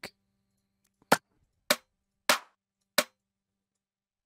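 Clap one-shot samples auditioned one after another: four short, sharp hand-clap hits with gaps of well under a second, the third ringing slightly longer.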